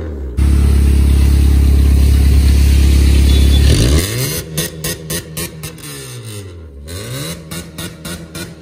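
Straight-piped exhaust of a modified Honda Civic Reborn being revved. The engine is held at a steady high rev for about three seconds, is let drop, and then gets several shorter blips of the throttle.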